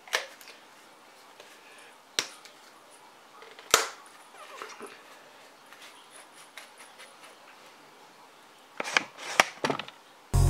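Cheap sea-salt grinder with a plastic grinding mechanism, loaded with black peppercorns, twisted by hand: a few sharp single cracks spaced a second or more apart, then a quick cluster of cracks near the end.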